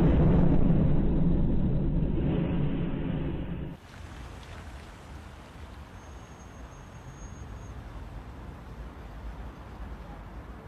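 The rumble of a missile explosion hitting a high-rise apartment block dies away over the first few seconds and is cut off short about four seconds in. A much quieter, steady outdoor background follows.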